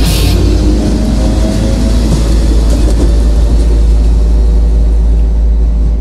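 Punk rock band's last chord left ringing over a deep, sustained bass rumble once the drums stop just after the start, beginning to fade at the very end.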